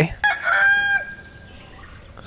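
A rooster crowing once: a single crow of about a second that trails off.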